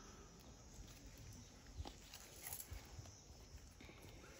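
Near silence: a faint outdoor background with a few soft taps, the clearest about two seconds in.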